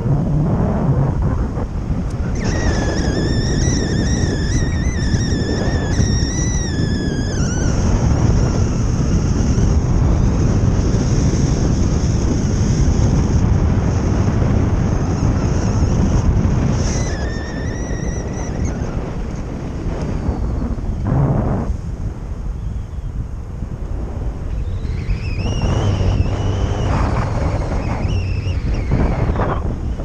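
Wind rushing over the microphone of a paramotor in flight, over the steady drone of its Vittorazi Moster Plus two-stroke engine. A high, wavering whine comes and goes three times.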